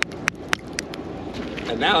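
Quick sharp taps, about four a second, that stop about a second in, from a small rusted hammer head pulled up on a fishing magnet being knocked against metal.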